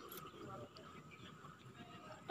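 Near silence: faint, even background noise.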